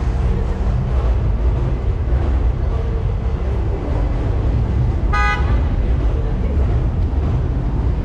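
City street traffic with a steady low rumble of passing cars, and one short vehicle-horn toot about five seconds in.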